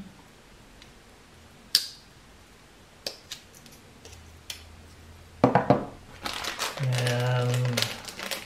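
Small sharp metal clicks from a folding camping utensil set (spoon, fork, can opener and knife) being worked in the hands: a few single clicks, then a quick cluster of clicks about five and a half seconds in. A man's voice follows near the end.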